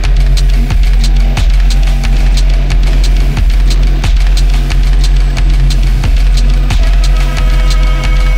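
Electronic music: a sustained low bass drone under layered held tones, with a sharp percussive crack about one and a half times a second and faint quicker ticks above.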